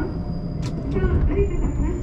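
Running noise of a JR Kyushu 813 series electric train heard from inside the car as it moves slowly along a station platform: a dense low rumble with wavering tones above it. A sharp click comes about two-thirds of a second in, and a thin steady high whine sets in about a second in.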